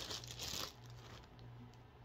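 Clear plastic packaging crinkling as a nasal cannula is handled out of its bag, loudest in the first half second or so, then dying down to a faint rustle.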